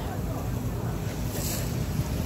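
Wind buffeting the microphone over the steady low rumble of a harbour ferry under way, with water washing past the hull. A brief hiss rises about one and a half seconds in.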